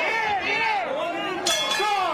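Broadcast commentators' voices, partly indistinct, over arena crowd noise. One sharp knock sounds about one and a half seconds in.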